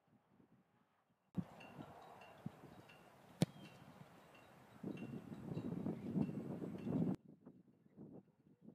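A single sharp thud about three and a half seconds in: a placekicker's foot striking a football off a kicking tee on a field-goal attempt.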